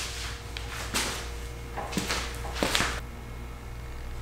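Soft handling noises: a few brief rustles and clicks about one, two and nearly three seconds in, over a low steady hum.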